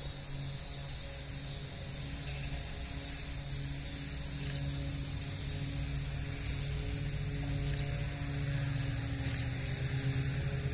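Steady low hum of a diesel locomotive engine, several held tones with a high hiss above, growing a little louder toward the end, with a few faint ticks.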